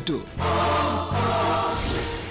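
Serial title music: a choir singing sustained chords, changing chord about a second in and starting to fade near the end.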